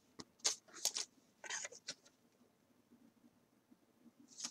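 Trading cards and a clear plastic card holder being handled: a few short, faint rustles and clicks in the first two seconds, then near quiet apart from one small click near the end.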